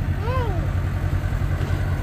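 Farm tractor's diesel engine idling steadily with a low, even rumble. About a third of a second in, a toddler's brief rising-and-falling vocal sound rises over it.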